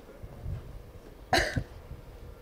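A single sharp cough close to a microphone, about a second and a half in.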